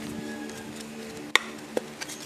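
Small hard plastic case handled by hand, giving one sharp click about a second and a half in and a softer click just after, over a steady low background hum.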